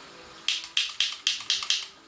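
Hot oil spattering in a frying pan around a frying beef burger patty: a quick run of about seven sharp pops, roughly four a second. The oil is spattering because the pan is too hot.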